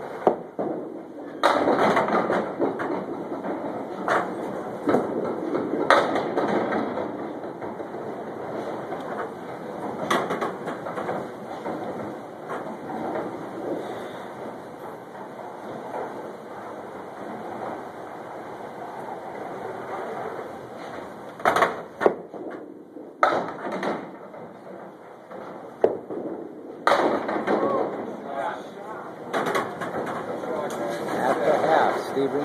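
Candlepin bowling alley sounds: small balls rolling down the wooden lanes and knocking into pins, with several sharp knocks and clatters scattered through, over a steady hubbub of indistinct voices.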